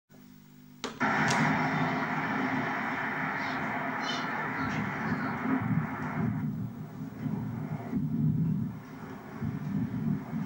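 A click as the camcorder recording starts, then steady outdoor background noise picked up by the camcorder's microphone. The noise thins out at about six seconds.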